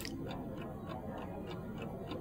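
Faint, regular ticking of a mechanical analogue chess clock, about four to five ticks a second.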